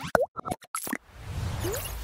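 Sound effects of a TV channel's animated logo ident: a quick string of cartoon-like pops and plops in the first second, one of them sliding in pitch, then a swelling rush of noise.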